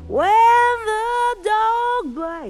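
Female jazz singer sustaining a long sung note that slides up into pitch, then a second held note about a second and a half in.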